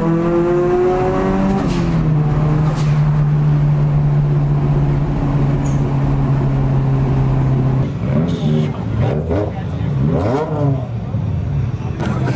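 Nissan Silvia's engine heard from inside the cabin, rising in pitch for a second or so under acceleration, dropping at a gear change, then holding a steady drone at motorway cruising speed. Near the end the engine note gives way to voices.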